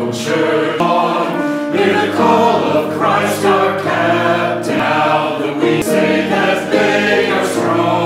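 Church choir singing a hymn in harmony, with sung 's' sounds every second or two.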